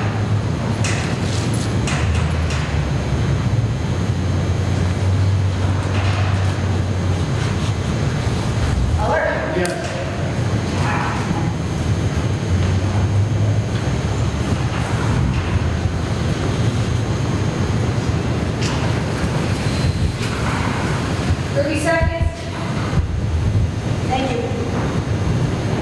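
Steady low rumble that swells and eases, with a brief voice-like sound about nine seconds in and again near the end.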